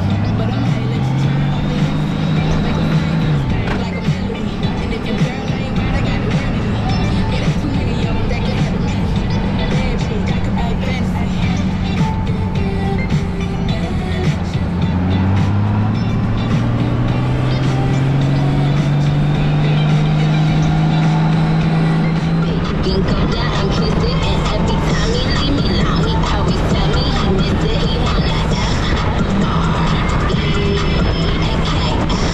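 Honda Gold Wing F6B's flat-six engine accelerating under wind rush. Its pitch rises in a short pull about a second in, then in a long climb in the second half before settling to a steady cruise. Music plays over it.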